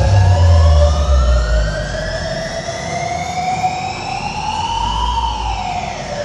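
A siren-like wail with several harmonics rises slowly for about five seconds and then falls away, over loud music whose heavy bass beat drops out about a second and a half in.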